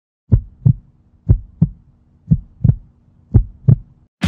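Heartbeat sound effect: four double beats, lub-dub, about one a second, over a faint low hum.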